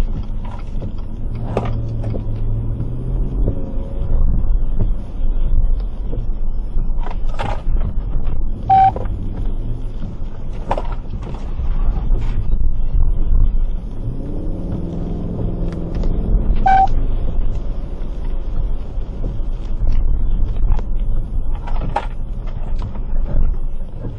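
Low rumble of a car in motion heard from inside the cabin, with scattered clicks and knocks. Two short beeps sound, one about nine seconds in and one near seventeen seconds.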